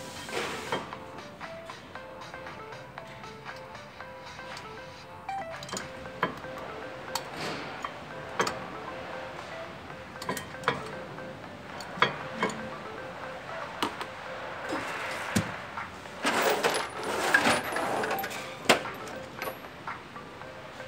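Background music under scattered sharp metallic clinks and taps from a front brake caliper and its pads being handled, with a denser, louder cluster of clinks and rattling about three-quarters of the way through.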